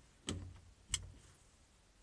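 A quiet pause with two faint clicks, a soft one about a third of a second in and a sharper one about a second in.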